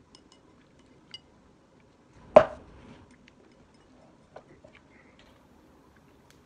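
Light clicks of chopsticks against ceramic bowls, with one loud sharp knock of tableware about two and a half seconds in that rings briefly.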